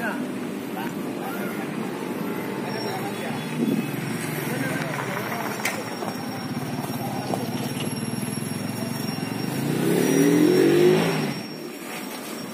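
Diesel engine of a KAI KUJR track inspection car running as the car rolls slowly over depot tracks, rising in pitch and getting louder about ten seconds in, then dropping off sharply.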